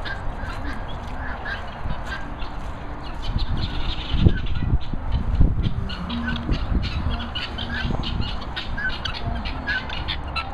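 Helmeted guineafowl calling: harsh short calls repeated several times a second. A few low rumbling bumps around the middle are the loudest moments.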